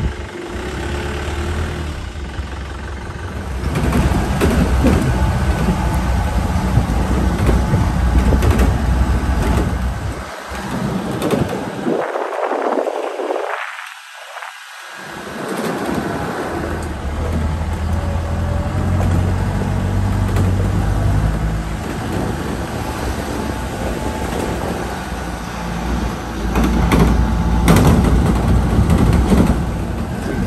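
A jeep's engine and road noise heard from on board while it drives along a rough dirt road, a steady low rumble with rattling. The rumble drops away briefly a little before the middle, then comes back.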